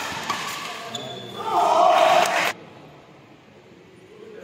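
Badminton doubles rally: sharp racket strikes on the shuttlecock and shoe squeaks on the court, then a loud shout about a second and a half in that cuts off abruptly a second later as the point ends.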